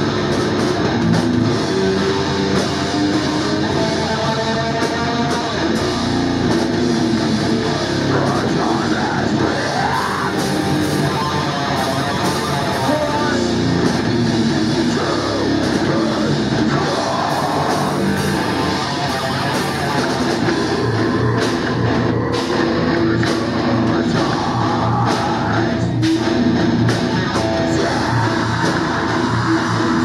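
Live heavy metal band playing loud and without pause: distorted electric guitars, bass and a drum kit.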